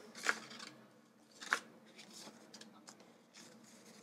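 Light rustling of paper as a thin paper envelope and die-cut paper tags are handled: two short rustles, about a quarter second and a second and a half in, then faint ticks of paper moving.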